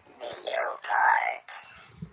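Whispered voice: two short, breathy phrases with no pitched tone in them, over about the first second and a half.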